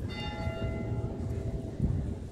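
A bell strikes once right at the start and rings on, fading away over about a second and a half, over a low background rumble. A short low thump comes near the end.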